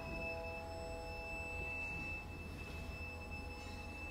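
Violin holding one long, quiet, very high note that is almost a pure tone, with softer lower notes sustained beneath and fading toward the end.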